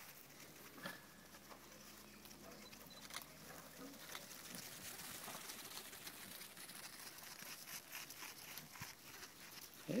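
Faint, irregular patter of small hooves on sand and grass as goat kids run about close by.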